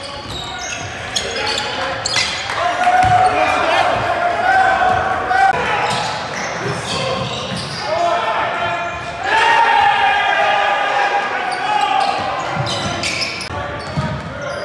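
Live game sound in a large gym: a basketball bouncing on the hardwood court, with players and the bench shouting, including long drawn-out shouts, the loudest about two thirds of the way through as a jump shot goes up.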